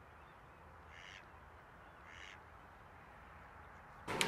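Two short, faint bird calls about a second apart, over near-silent outdoor background.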